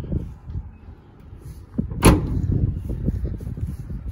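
A single sharp slam about two seconds in, over a low rumble of wind and handling noise on the microphone.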